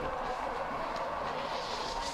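Alpine skis running at speed over hard-packed snow: a steady rushing hiss.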